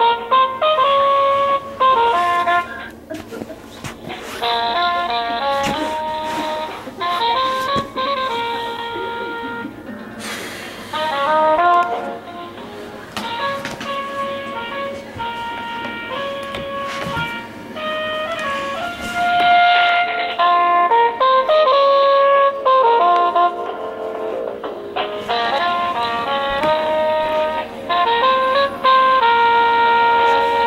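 Instrumental music: a melody of short held notes stepping up and down over a backing.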